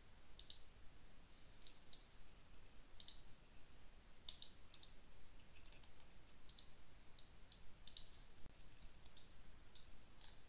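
Computer mouse buttons clicking, about a dozen short, faint clicks scattered irregularly over a low background hiss, as points are picked on screen.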